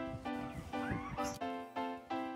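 Background music of short, rhythmically repeated notes, with a brief sliding tone about a second in.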